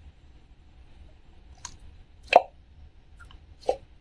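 A squishy foam toy carrot being gripped and squeezed in the hand, giving a few short pops, the loudest about two and a half seconds in.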